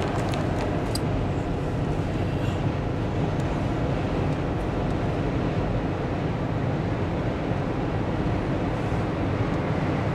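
A car driving at highway speed, heard from inside the cabin as a steady road noise.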